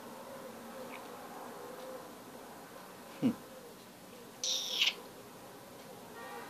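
Faint steady electrical hum from a powered bench test setup. A man gives a short "hmm" about three seconds in, and a brief hiss follows about a second later.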